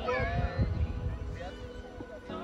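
Several voices shouting across a football pitch in short, high-pitched calls that rise and fall, near the start and again about one and a half seconds in.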